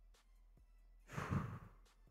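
A man sighing once, a short breathy exhale into a close microphone, about a second in.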